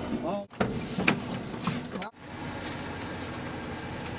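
A van running with steady road and engine noise, with a couple of short sharp knocks in the first two seconds.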